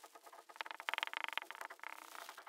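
Marker pen squeaking and tapping against a whiteboard as short strokes are drawn, faint, with a busy run of quick squeaks from about halfway through.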